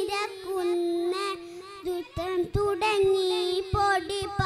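A young girl singing solo into a microphone, holding long notes that bend in pitch, with short breaks between phrases.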